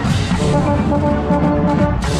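Marching band brass playing loudly, heard from inside the trombone section with a trombone right at the microphone: several held notes sounding at once over strong low tones, moving in short steps.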